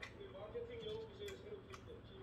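Light, irregular clicks of metal chopsticks against a frying pan and bowls while picking up beef brisket, over a faint wavering hum-like tone.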